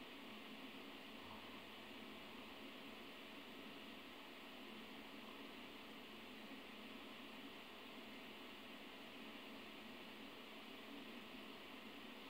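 Near silence: a steady, even hiss of recording noise with no other sound.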